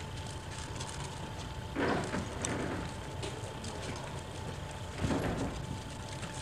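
Outdoor street noise: a steady low rumble with a faint steady hum and many small clicks, and two louder rushes of noise, about two and five seconds in.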